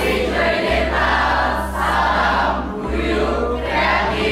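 A group of young men and women calling out together in unison, a thank-you and then a slogan, over background music with a steady bass line.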